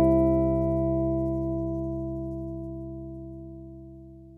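A final guitar chord with bass ringing out and slowly dying away, its higher overtones fading first.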